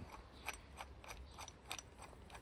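A hand-turned screwdriver with a long extension bit working at a stubborn screw in the mower's plastic underside, making faint, irregular clicks.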